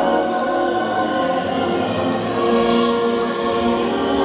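A choir singing slow, sustained notes, with the pitches shifting every second or so.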